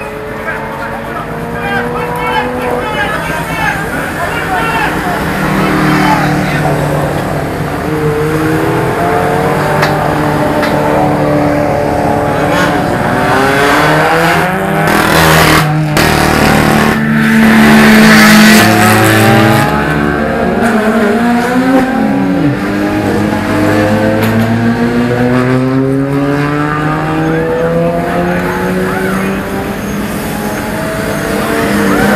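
Race car engines in a pit lane. Several cars pass, their engine notes overlapping and rising and falling as they accelerate and slow. There are a few sharp clicks about halfway, and the loudest pass comes a little after.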